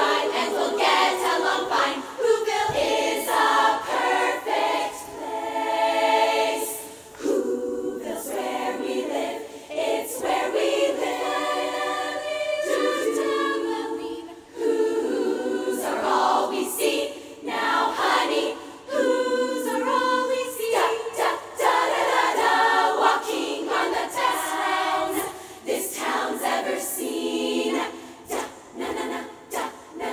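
Large women's choir singing a cappella, in sung phrases with brief breaks between them.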